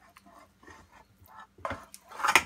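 Soft, used lard being pushed by hand out of a metal bowl into a stainless steel pot: faint scraping and squishing, with one louder short thud near the end.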